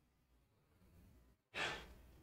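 Near silence, then about a second and a half in a short breath into a handheld microphone, lasting about half a second.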